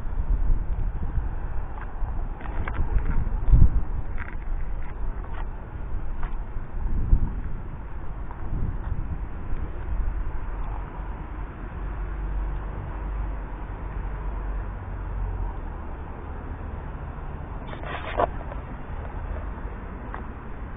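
Outdoor ambience during snowfall: a steady low rumble and hiss, with a few bumps and clicks in the first few seconds and one short sharp sound near the end.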